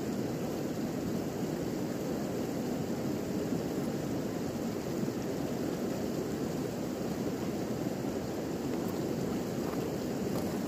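A steady, even rushing noise of the open outdoors, with no distinct events.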